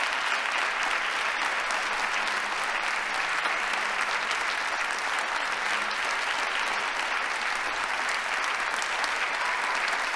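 Large audience applauding steadily in a hall, a standing ovation.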